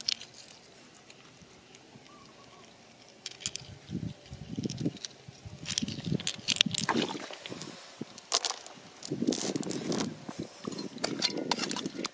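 Hands working in wet mud and small stones: irregular squelches, clicks and scrapes that begin about three seconds in after a quiet start and grow busier through the second half.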